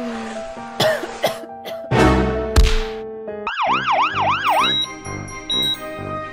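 A cartoon siren effect, a fast up-and-down wail repeated about four times for just over a second, over children's background music. Near the end a short high beep like a hospital heart monitor follows.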